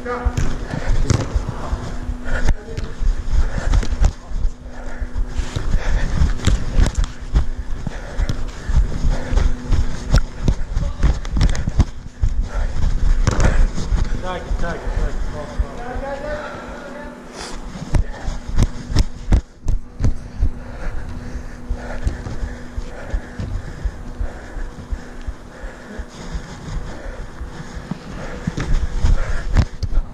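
Thumps and knocks of footfalls and body movement on a chest-mounted camera as its wearer runs on artificial turf, with a steady low hum that is strongest in the first ten seconds or so.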